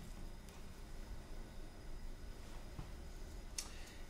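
Quiet room tone with a steady low hum and a few faint clicks, the sharpest near the end.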